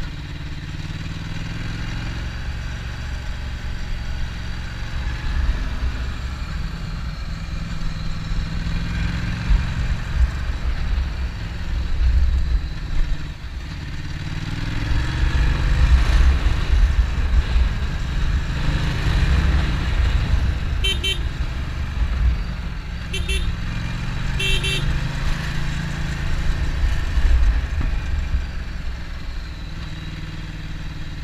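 2015 Ducati Multistrada's L-twin engine running on the move, its pitch rising and falling with the throttle, under heavy wind rumble on the camera microphone. Three short pitched beeps come about two-thirds of the way through.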